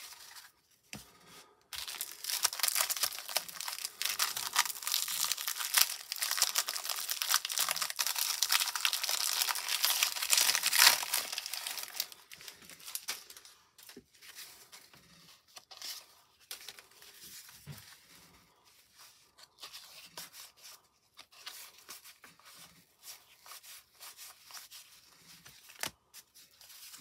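Cellophane wrapper of a 1990 Topps baseball card cello pack being torn open and crinkled for about ten seconds, then quieter rustling and flicking as the stack of cardboard cards is handled.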